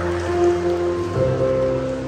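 Electronic keyboard playing slow, sustained chords, the chord changing about a second in.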